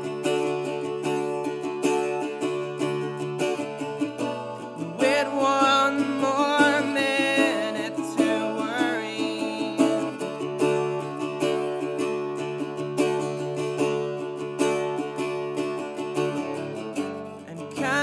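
Acoustic guitar strummed in a live song, with a solo male voice singing a phrase that comes in about five seconds in.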